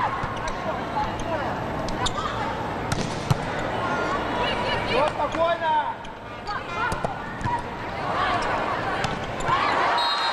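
Indoor volleyball rally: the ball is struck with sharp slaps several times, the loudest a little past three seconds in, over steady arena crowd noise and players' shouts.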